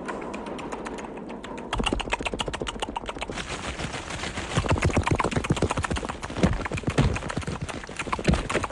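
A rapid, fast-paced run of knocks and thuds, like a volley of coconuts dropping from a palm and hitting the sand, lighter at first and heavier from about two seconds in.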